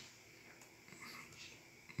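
Near silence: faint room tone with a few soft, faint sounds.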